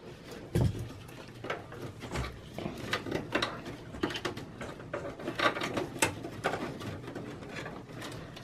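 Gloved hands unplugging and handling SATA power cables inside a desktop PC case: scattered small clicks of plastic connectors and rustling of wires against the sheet-metal chassis.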